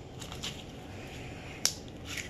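Hands handling and poking slime: a few soft squishes, then one sharp click-like pop about one and a half seconds in.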